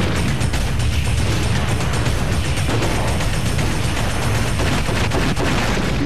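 Film trailer soundtrack for a western gunfight: a rapid, continuous volley of gunshots mixed with a music score.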